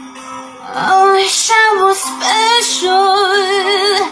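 A woman singing over a backing track. Her voice comes in about a second in and ends on a long held note with a wide vibrato.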